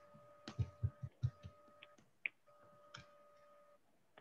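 Faint clicks and soft knocks over a line in a video call: a quick cluster of about eight in the first second and a half, then a few scattered ones. Under them runs a faint steady hum that comes and goes.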